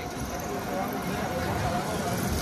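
Street traffic: a motorcycle and a motorized three-wheeler pass along the road, a steady low rumble of engines, with faint voices in the background.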